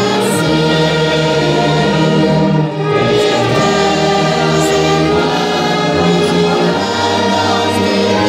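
A congregation singing a hymn together with a church orchestra that includes brass. The notes are long and held, with a brief break between phrases about a third of the way in.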